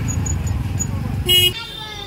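Low, steady rumble of a small vehicle riding along a road, with a short, sharp horn toot about one and a half seconds in, after which the rumble cuts off abruptly.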